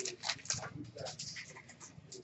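Faint rustling and soft flicks of Upper Deck SP Authentic hockey cards being thumbed through by hand: a few short strokes in the first second, quieter ones after.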